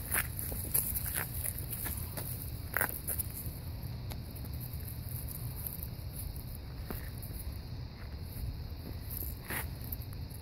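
Young puppies scuffling and wrestling on dry leaves and concrete: scattered short scrapes and taps of paws and bodies over a steady low rumble.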